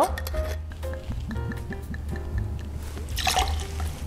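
Amaro poured from a copper bar jigger into a glass, a short trickle of liquid with small glass and metal clinks, over background music with held notes.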